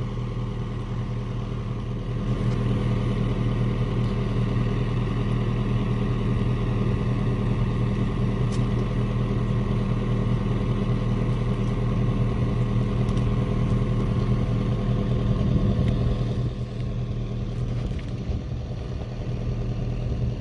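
Mini excavator engine running steadily, a little louder through the middle of the stretch.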